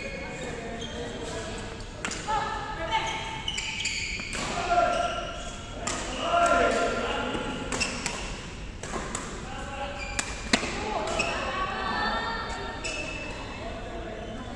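Badminton rally: sharp racket-on-shuttlecock hits at irregular intervals, the sharpest about ten and a half seconds in, over voices echoing in a large sports hall.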